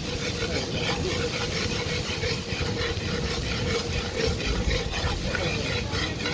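Food frying in hot oil in a large metal pot over an open fire, sizzling as a metal spoon stirs and scrapes the pot bottom in quick repeated strokes.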